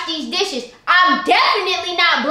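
A young woman's high-pitched voice talking loudly and excitedly, breaking off briefly a little under a second in before starting again abruptly.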